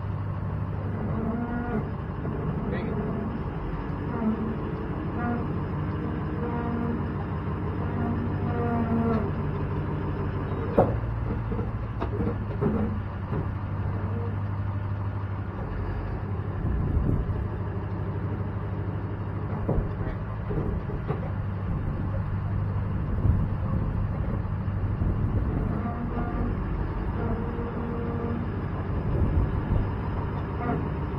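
A pickup truck idling with a steady low hum while it backs slowly under a fifth-wheel trailer, its brakes groaning in drawn-out tones through the first ten seconds and again near the end. One sharp metallic clunk comes about eleven seconds in, as the trailer's pin box meets the hitch.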